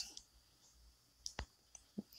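A few short, faint clicks in near quiet, about a second and a quarter in.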